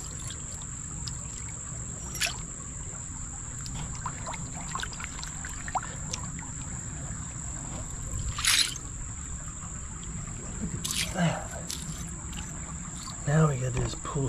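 Hands digging through shallow creek gravel underwater: scattered splashes and knocks of stones over the flow of water, the loudest about eight and a half seconds in. A steady high-pitched insect buzz runs underneath throughout.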